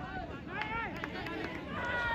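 Rugby players shouting calls to each other during open play, several voices overlapping and growing louder toward the end.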